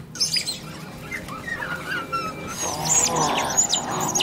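Film sound effects of small Compsognathus dinosaurs calling: short high chirps and squeaks with a wavering gliding call, growing denser near the end as more of them gather.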